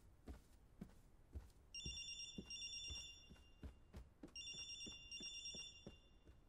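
A telephone ringing, two rings of about a second and a half each with a pause between, heard quietly across the room. Under it, soft even footsteps, about two a second.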